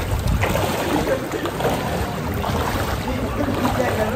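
Floodwater sloshing and splashing as people wade through it, with voices in the background.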